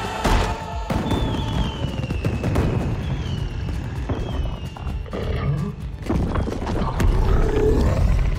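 Film music over a deep, heavy rumbling roar from a giant of rock and trees waking up.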